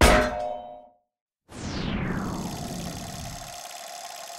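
Logo sound effects: a sudden metallic clang that rings and dies away within a second. After a short silence comes a falling whoosh, whose sound lingers for about two seconds before fading.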